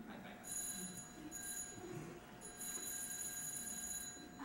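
Telephone ringing, in three bursts of high ringing, the last the longest, over a faint steady hum.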